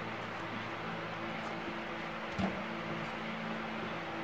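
A steady low hum with one soft knock about halfway through.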